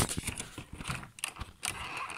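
Light, irregular clicks and taps of a small plastic toy train engine being handled against a cardboard advent calendar.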